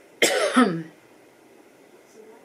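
A woman coughing into her fist: one short, loud cough about a quarter of a second in, ending with a falling voiced tail.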